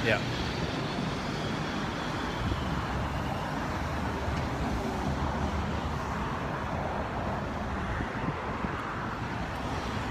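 Steady road traffic noise from cars on the street, an even rumble and hiss with a low engine hum underneath.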